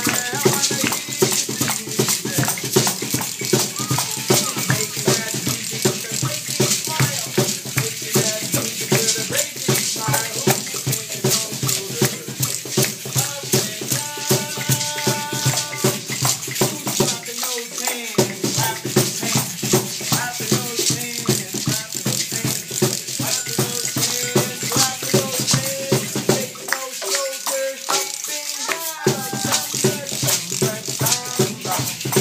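Several hand-held shakers and maracas shaken by small children, a dense, continuous rattling with no steady beat, with children's voices over it now and then.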